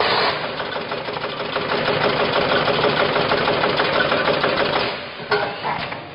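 Coffee capsule bagging machine running: a dense, rapid rattle over a steady hum starts abruptly and eases off about five seconds in, leaving a few sharp clicks.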